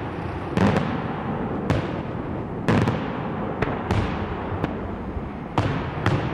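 Daylight fireworks show: aerial shells bursting overhead in sharp, loud bangs, about one a second with some in quick pairs, over a continuous rumble of further bursts and echoes.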